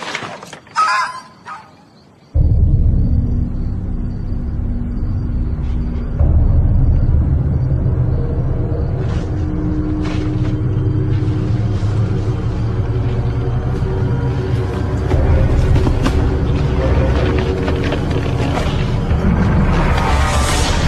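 Ominous film score: a loud, low rumbling drone with held tones that comes in suddenly a couple of seconds in, then grows louder about six seconds in and again near the end.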